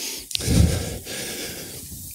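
A man's sharp gasping breath close to a handheld microphone about a third of a second in, then softer breathing.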